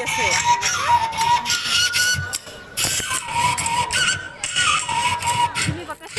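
Crowd of people talking, with a steady high-pitched tone held through most of it that breaks off briefly a couple of times.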